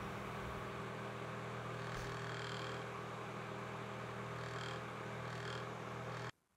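Electric desk fan running, heard through a dynamic microphone as a steady whir with a low hum. This is the unwanted background noise the denoiser is sampling.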